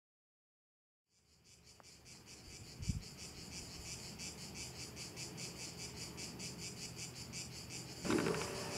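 Cicadas singing in a high, evenly pulsing chorus, about six pulses a second, fading in about a second in. A low thump comes about three seconds in.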